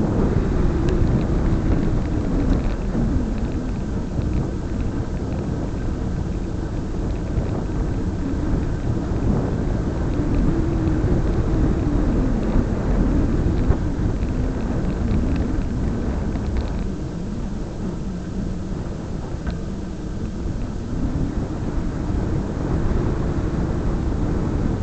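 Wind buffeting the microphone of a moving camera: a steady, loud low rumble with no clear pitch, easing somewhat about two-thirds of the way through.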